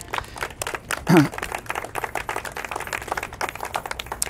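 A small crowd clapping, a scattered round of applause, with a brief voice about a second in.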